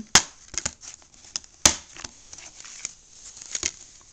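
Plastic Blu-ray case being forced open by hand: sharp plastic clicks and snaps, the two loudest about a second and a half apart, with smaller ticks and rustling between them.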